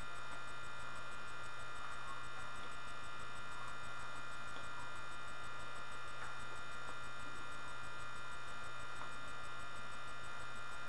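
Steady electrical mains hum in the recording: a constant low drone with a layer of high, thin whine, unchanging throughout.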